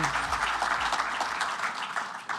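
Audience applauding, the clapping fading away toward the end.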